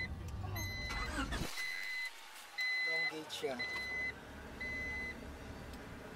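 Honda Prelude's dashboard warning chime beeping five times, evenly, about once a second, each beep about half a second long and all at the same pitch.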